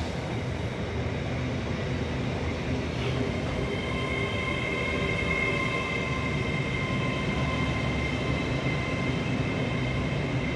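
LNER Class 801 Azuma electric multiple unit, two sets coupled, running past with a steady rumble of wheels on rail. From about three seconds in, a steady high whine from the traction equipment joins it.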